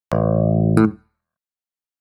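Bass guitar plucking two notes, the second about three quarters of a second in; the sound dies away about a second in and is followed by silence.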